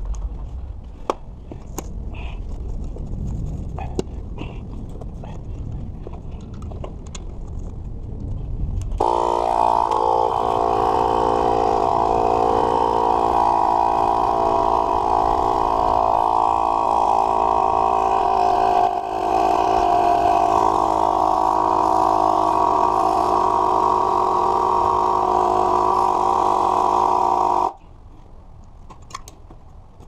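Cordless battery-powered tire inflator's compressor starting about nine seconds in and running steadily as it pumps up a 20x4 fat tire on an e-bike hub-motor wheel, then cutting off suddenly near the end. Before it starts there are clicks and handling knocks as the chuck is fitted to the valve.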